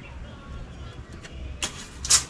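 Metal tape measure being handled and pulled out along wooden boards, with a sharp click about a second and a half in, over a low rumbling outdoor background.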